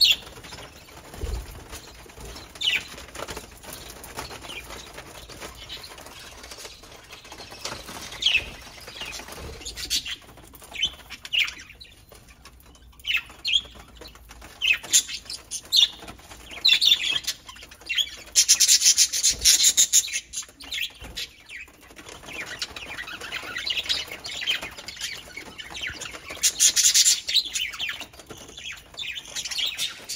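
Budgerigars chirping, with short high calls scattered throughout and louder, denser bursts about two-thirds of the way through and again near the end.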